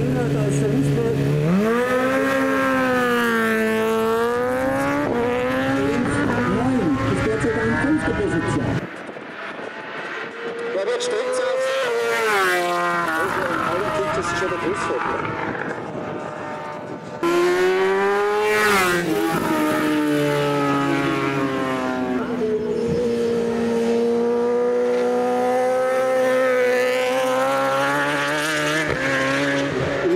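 A 1000 cc superstock racing motorcycle held at high revs, then launching and accelerating hard through the gears, the pitch climbing and dropping back with each upshift. About nine seconds in the sound cuts to a quieter, more distant engine climbing and fading. Past seventeen seconds it cuts to a loud, close engine, revs falling and then held fairly steady.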